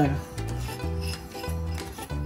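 A silicone spatula scraping brown sugar out of a bowl into a pot, in a series of short, gritty scrapes, over background music with a steady bass line.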